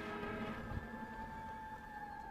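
Soft background music of long held synthesizer tones, a new lower tone coming in about a second in, over a faint low rumble.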